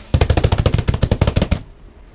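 Rapid drum roll slapped with both palms on a cardboard shipping box: a fast, even run of hollow slaps, more than a dozen a second, that stops suddenly after about a second and a half.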